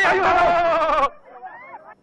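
A person's loud, high-pitched, drawn-out cry that breaks off about a second in, leaving only faint voices.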